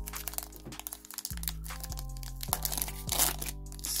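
Foil trading-card pack wrapper crinkling and crackling as it is torn open by hand, over steady background music.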